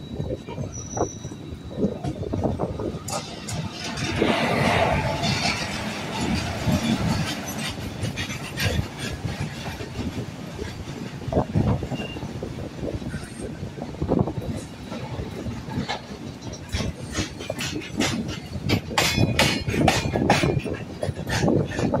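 A goods train of open box wagons passing close on the adjacent track, heard from the open door of a moving passenger train: a continuous rumble and rush of wheels on rail, loudest about four to six seconds in. Rapid clicks and clatter of wheels over rail joints build towards the end.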